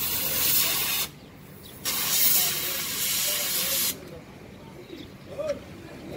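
Compressed air hissing at a truck tyre's valve stem in two bursts, the first about a second long and the second about two seconds long, as a metal tool is held to the valve.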